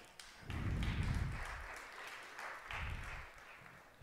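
Brief applause from the audience in the chamber, starting about half a second in and fading, with a smaller swell near the end.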